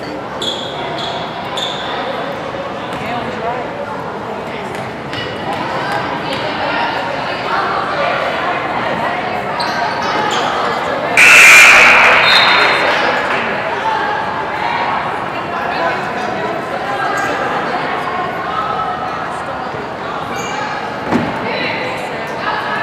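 Basketball game in a large echoing gym: spectators talking, with the ball bouncing on the hardwood court. About eleven seconds in, a sudden loud burst of noise breaks in and fades over a couple of seconds.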